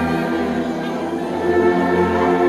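Church brass band, sousaphones among the brass, playing a hymn in slow held chords, moving to a new chord about one and a half seconds in.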